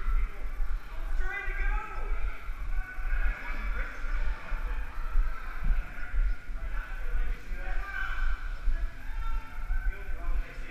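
Indistinct voices with music in the background, over a low, uneven rumble from the body-worn camera being jostled as its wearer moves.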